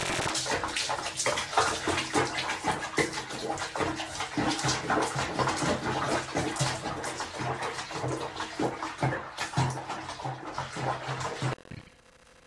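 Water splashing and sloshing in a plastic tub as a cat sits bathing in it, with many small splashes. The sound cuts off suddenly near the end.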